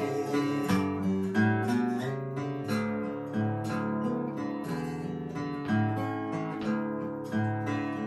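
Acoustic guitar playing a solo instrumental passage in a steady rhythm, with no voice.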